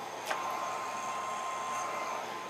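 Handheld hair dryer running steadily on its low setting, a smooth rush of air with a thin steady whine in it; one light tap shortly after the start.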